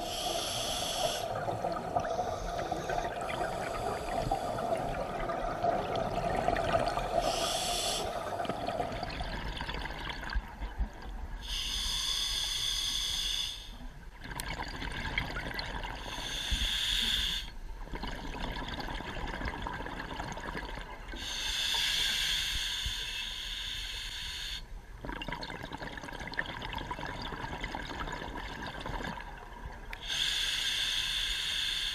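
Scuba diver breathing through a regulator underwater: a hissing inhalation through the demand valve every few seconds, lasting one to three seconds, alternating with the rush and bubbling of exhaled air.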